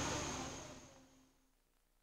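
Background murmur of an outdoor party gathering with camcorder hiss and a faint steady high whine, fading out over about the first second into silence as the home-video recording ends.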